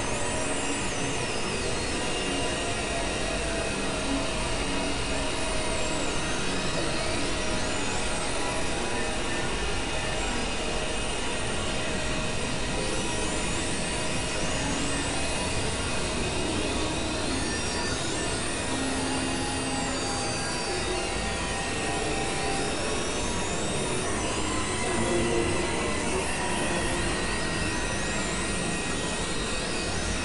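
Dense, layered experimental electronic noise music: a continuous wash of noise with many steady held tones, crossed by slow pitch sweeps that rise high and fall back again.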